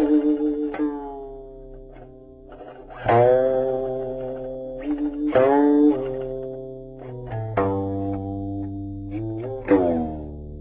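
Guqin (seven-string Chinese zither) played solo: slow, sparse plucked notes, a strong one every two seconds or so, each ringing and fading away. Some notes bend in pitch as they ring, and near the end a note slides upward before a fresh pluck.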